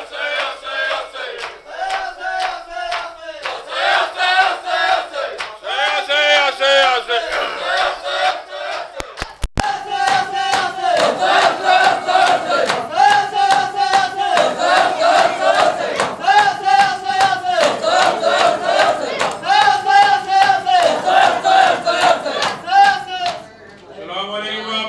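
A group of men chanting a Shia noha together in loud, repeated phrases over a steady rhythm of hands striking chests (matam). The chanting stops just before the end.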